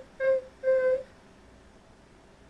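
A person's voice making short, detached staccato notes on one steady, fairly high pitch: two brief notes in the first second, then quiet.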